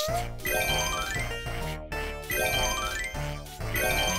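Smartphone game music: bright chiming notes climbing in quick rising runs, repeated several times over a steady backing, as a game stage is cleared.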